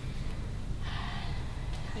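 A woman's sharp in-breath about a second in, lasting about half a second, over a low steady room hum.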